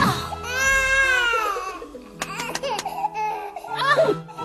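Cartoon baby hare crying: one long, high wail that rises and falls in pitch, then shorter cries near the end, over soft background music. A few quick clicks come in the middle.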